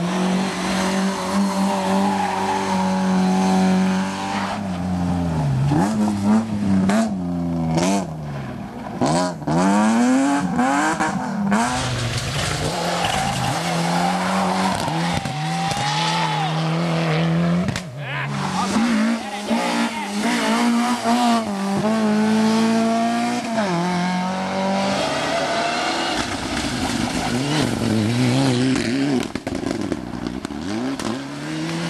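Rally cars driven hard through a corner one after another, engines revving high, pitch climbing through each gear and dropping at the changes.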